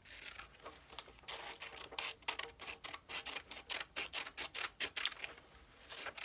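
Scissors cutting a sheet of white paper: a run of short snips, sparse at first and then about four a second after the first two seconds.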